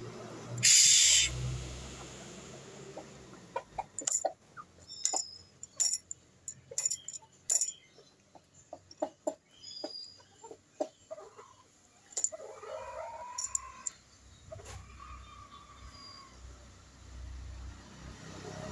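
Chickens foraging: a run of sharp clicks and taps from pecking among coconut husks, then drawn-out clucking calls, one near the middle and another a little later. A brief loud noisy burst comes about a second in.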